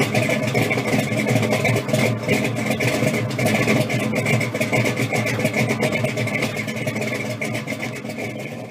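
A car engine running steadily, fading out near the end.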